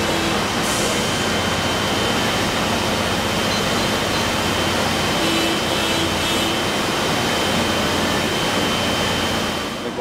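Steady, loud machine noise of a running electroplating line: a constant rushing hiss with a thin high whine held through it.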